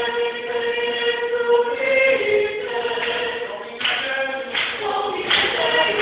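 High school madrigal choir singing a cappella. A sustained chord is held for the first couple of seconds, then the voices move to new notes, with crisp sibilant consonants sounding several times in the second half.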